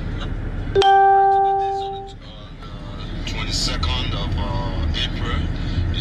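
A single electronic chime tone sounds suddenly about a second in and fades out over about a second, the low background rumble dropping away beneath it. Faint voices follow.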